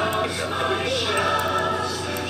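Choir singing sustained notes, with a steady low hum underneath.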